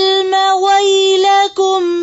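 A woman reciting Quranic verses in a melodic tajweed chant, holding long, steady notes with a few brief breaks between them.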